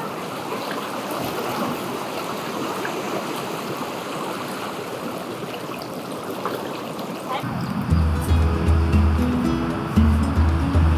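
Seawater washing and swirling over rocks in a tidal pool, a steady rush. About seven and a half seconds in, background music with a deep bass line comes in over it.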